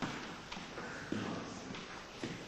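Footsteps on a tiled corridor floor, a few steps at about two a second.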